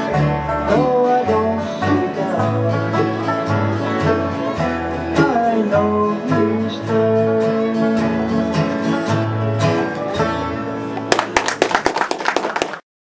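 Bluegrass band with acoustic guitar playing the last bars of a song over a walking bass line. About eleven seconds in the music stops and a brief patter of clapping starts.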